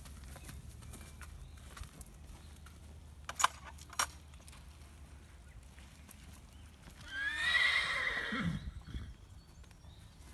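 A horse whinnying for about two seconds in the second half: a high call that drops to a low finish. Earlier come two sharp clicks about half a second apart, and faint hoof steps on gravel.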